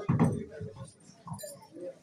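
People's voices in a hall: a short loud utterance at the start, then scattered quieter fragments of talk.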